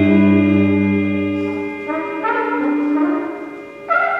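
Free-improvised jazz group playing long held notes, with a trumpet sustaining tones over a low drone. The drone drops out before two seconds in and new held notes take over, fading before a fresh note enters near the end.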